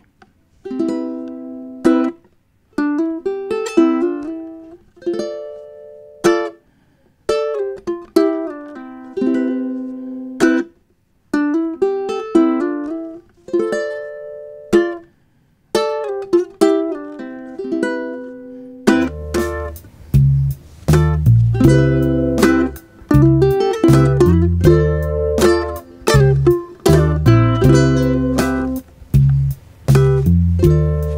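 Solo ukulele playing a soul-style fill over and over in short phrases: chord strums with hammer-ons, slides and pull-offs between Cmaj7 and Dm7 shapes, some strums muted short. About two-thirds of the way in, a backing track with a bass line joins and the ukulele plays the fill along with it.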